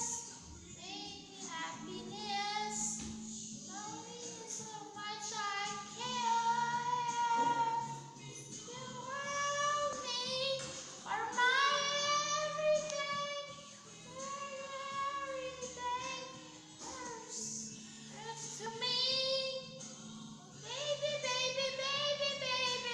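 A woman singing a slow ballad solo, holding long notes with vibrato, over a quieter recorded backing track.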